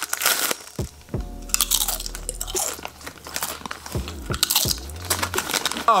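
Doritos tortilla chips crunching as they are bitten and chewed, in irregular bursts.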